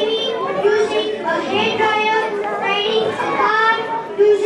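Many children's voices chattering and calling out at once, overlapping.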